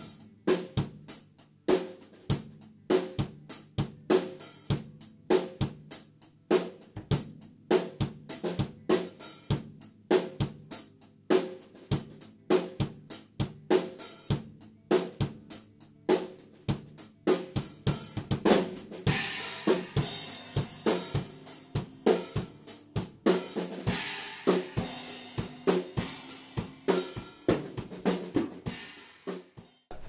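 Rock band playing a song: a drum kit, with snare, hi-hats, cymbals and bass drum, keeping a steady beat over bass and electric guitar. The cymbals get heavier about two-thirds of the way in, and the playing stops abruptly just before the end.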